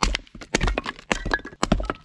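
Hatchet chopping small pieces of wood into kindling on a log chopping block: a run of sharp cracks as the blade bites and the wood splits, the loudest strikes about half a second apart.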